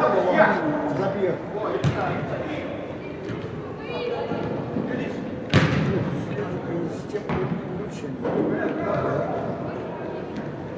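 Football kicked on artificial turf in a large indoor hall: a few sharp thuds that echo, the loudest about five and a half seconds in, with players' voices calling across the pitch.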